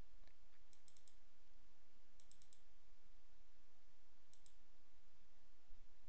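Faint computer mouse clicks in quick runs, with one run about a second in, another around two and a half seconds and a last short one near four and a half seconds, over a steady low hiss.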